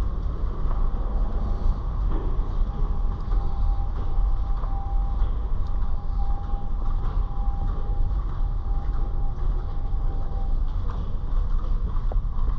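Steady low rumble of a ferry's engines and hull vibration heard inside a passenger-deck corridor, with a faint steady whine that holds for several seconds in the middle.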